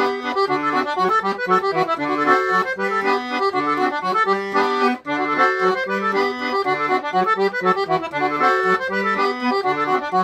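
Sonola SS5 piano accordion playing a tune: a treble melody over a steady alternating bass-note and chord accompaniment from the bass buttons, with a brief break about halfway through.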